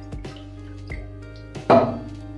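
Soft background music, with faint drips and ticks of cooking oil being poured into a hammered steel kadhai. A brief louder sound breaks in near the end.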